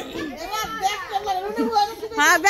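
Lively overlapping chatter of several women's and girls' voices talking over one another.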